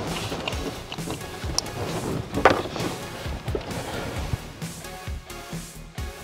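Background music, with one sharper click about two and a half seconds in.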